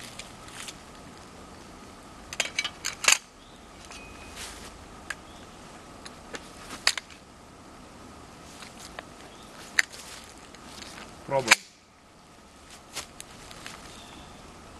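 Sharp clicks and snaps from a 12-gauge shotgun with a .223 chamber insert, loaded with a cartridge that holds only a primer and no powder. The two loudest come about three seconds in and again at about eleven seconds.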